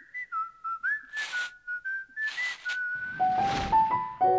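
A whistled logo jingle: one pure whistle stepping between a handful of notes, cut by two short whooshes. Near the end comes a louder whoosh as three short notes step upward.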